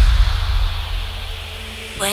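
Electronic house music at a transition: a low bass note and a hissing noise wash fade steadily over two seconds, leaving the track nearly bare just before the next section comes in.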